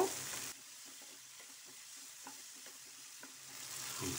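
Spatula stirring chopped onion, tomato and capsicum in a non-stick frying pan: faint irregular scrapes and light ticks of the spatula against the pan, with a soft sizzle that fades about half a second in.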